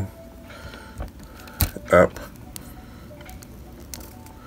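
Small plastic clicks as an action figure's ankle joint is bent by hand: one light click about a second in and a sharper one just before the word 'up'.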